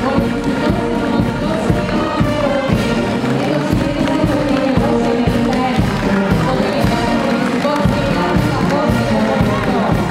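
Brass marching band playing a march over a steady drum beat, with crowd voices underneath.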